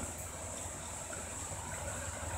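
Faint steady room tone: an even hiss with a low hum underneath.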